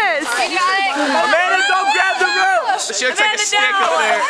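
Overlapping voices of a group of young people: high-pitched laughter, squeals and exclamations without clear words, including a falling squeal at the start.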